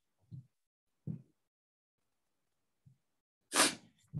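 Dead silence on a video-call microphone with a few faint, brief sounds, broken near the end by one short, sharp burst of breath into the microphone.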